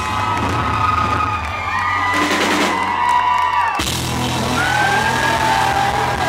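Live band playing an instrumental passage: an electric guitar lead with bending notes over bass and drums.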